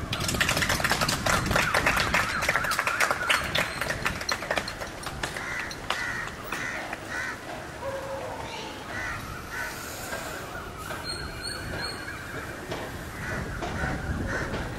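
Crows cawing: a dense run of harsh calls in the first four or five seconds, then fewer and fainter calls.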